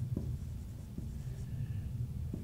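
Marker pen writing on a whiteboard: a faint scratching with a few light taps of the tip.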